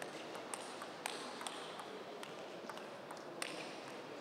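Table tennis rally: the ball clicking sharply off the players' bats and the table, about two hits a second, over a steady background hum of the hall.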